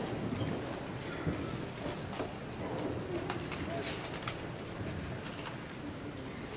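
Scattered crackles and clicks of paper being handled by a band, over a low steady room background.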